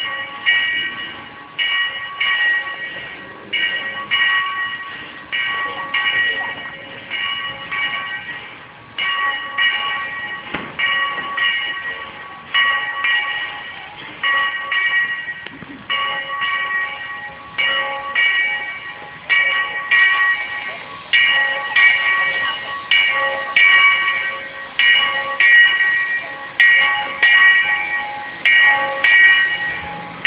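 Sierra No. 3 steam locomotive's bell ringing steadily, one clang a little under every second, each ring dying away before the next.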